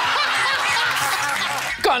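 A crowd laughing loudly, studio audience and guests together, with many voices overlapping throughout. A man's voice begins speaking just before the end.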